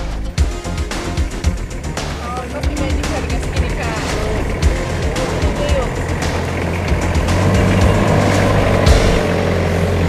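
Four-wheel-drive vehicle's engine running low and steady as it crawls off a log bridge. It grows louder as it drives up to the camera and past it near the end.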